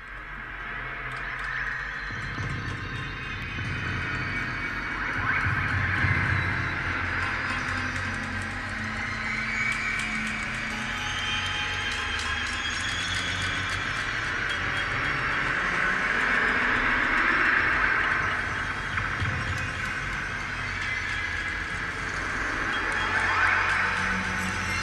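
Recorded music fading in from silence: a dense, hissing wash with no clear melody, joined by a low pulsing beat about two seconds in.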